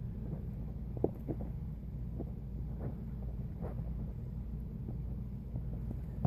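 Steady low rumble with a few faint, scattered ticks and rustles.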